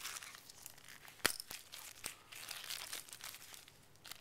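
Thin clear plastic packaging crinkling as the bagged phone data cable is handled, in irregular rustling crackles, with one sharp click about a second in.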